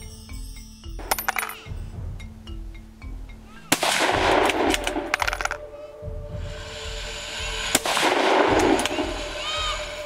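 Two loud hunting-rifle shots about four seconds apart, each trailing off over a second or so, with a fainter crack about a second in, over background music.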